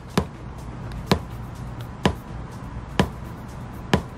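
Polarity-test pulses played through the car audio system's speakers: sharp clicks at a steady pace of about one a second, four in all.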